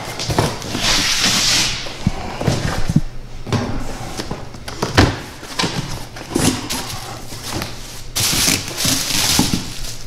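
A cardboard shipping box being cut and opened by hand: repeated knocks and scrapes of cardboard and flaps, with a scraping hiss about a second in. Plastic packaging rustles loudly near the end.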